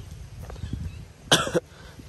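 A single short cough, loud and close, about a second and a half in.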